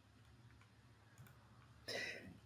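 Near silence: faint room tone with a low hum and a faint click about a second in, then a short noise near the end just before someone starts to speak.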